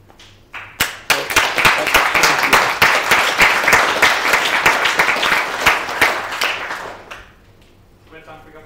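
Audience applauding: the clapping starts under a second in, swells quickly to a dense, even patter and dies away about a second before the end.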